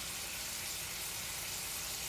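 Bison strip loin steaks sizzling steadily in butter in a skillet over medium to medium-low heat.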